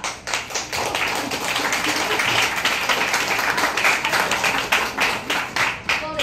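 A small seated audience clapping: a dense, even run of applause that starts to thin right at the end.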